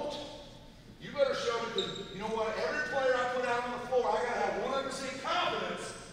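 A man's voice talking in a large, echoing gymnasium, with a brief sharp knock near the end.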